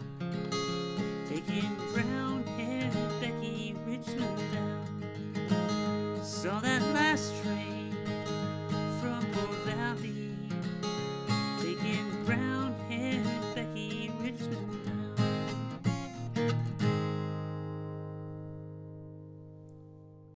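Steel-string acoustic guitar picking out a country-folk instrumental ending. It closes on a final chord about three seconds before the end, which rings and fades away.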